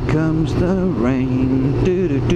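Sport motorcycle's inline-four engine under way, heard from the rider's helmet, its pitch rising and falling as the throttle is opened and eased.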